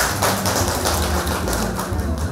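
Applause: many hands clapping at once, dying away near the end.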